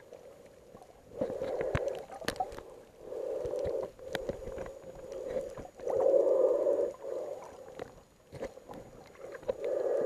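A snorkeler breathing through a snorkel, heard through an underwater camera: a rushing breath of about a second, four times, the one near the middle loudest, with scattered sharp clicks between.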